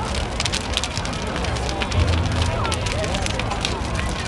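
Large clock sculpture burning in a bonfire: dense, irregular crackling and popping of the flames over a low rumble.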